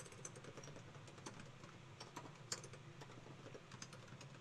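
Computer keyboard being typed on slowly: an irregular run of faint key clicks, one a little louder about two and a half seconds in.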